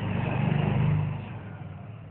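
A motor vehicle's engine, growing louder and then fading within about a second and a half.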